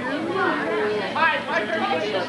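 Voices chattering: several people talking, the speech overlapping and not clearly picked out.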